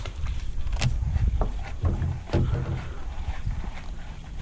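Irregular light knocks and clatter over a low rumble, from handling the rod and gear aboard a small fishing boat.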